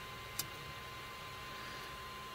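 Faint steady hiss with a thin steady tone, broken once, about half a second in, by a single short click as fingers turn the tension screw on an Orbiter extruder.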